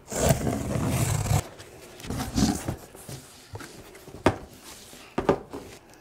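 Steel utility knife slicing through packing tape on a cardboard box, then cardboard flaps scraping and rustling as the box is opened, with a couple of sharp knocks near the end.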